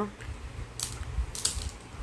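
Handling noise from a handheld phone's microphone: a low, uneven rumble with two short clicks, one just before and one just after the middle.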